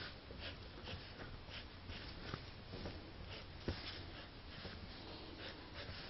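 Faint scratching of a felt-tip marker drawing on denim in short strokes, about two a second, with one sharp tap about three and a half seconds in.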